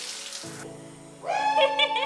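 Water spraying from a handheld shower head onto a tiled shower floor, cut off about half a second in as background music takes over. A sung vocal line enters in the music a little past the middle.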